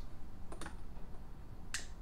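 A few faint, sharp clicks: two quick pairs, about a second apart.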